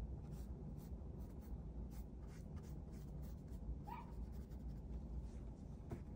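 A pen scratching on paper in many quick, short strokes while inking a drawing. About four seconds in there is one brief high-pitched whine.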